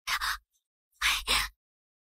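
A woman's breathy gasps: two quick pairs, one at the start and one about a second later.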